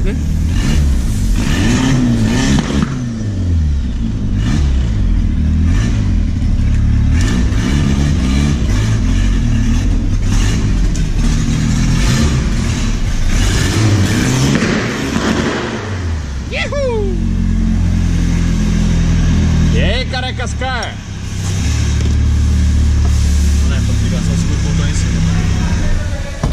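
Turbocharged Volkswagen Gol's engine heard from inside the cabin, driven at low speed with the revs rising and falling. After about 22 seconds it settles to a loud, steady low idle. A few short falling whistles come about two-thirds of the way through.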